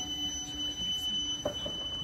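Live orchestral music: a low sustained note with a steady high tone held above it, and a new note coming in about one and a half seconds in.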